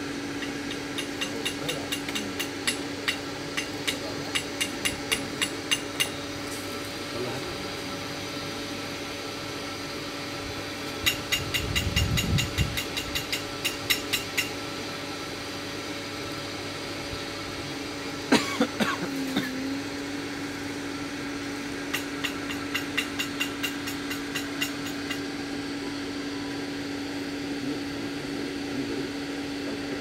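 Steam-heated mawa plant running, with a steady machine hum from its motor. Three spells of quick, evenly spaced clicking run over it at about three clicks a second, and there is a sharp knock about two-thirds of the way through.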